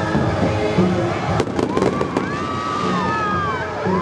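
Fireworks sounds over the fountain show's music: a quick string of sharp cracks about a second and a half in, then several whistling tones gliding up and falling away.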